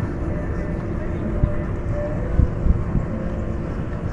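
Low, steady wind rumble on the microphone, with a few soft knocks about a second and a half in and twice more near two and a half seconds.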